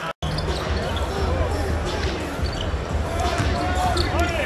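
Basketball arena game sound: a low, steady crowd murmur and hum with a ball being dribbled on the hardwood court. The sound drops out for a moment just after the start.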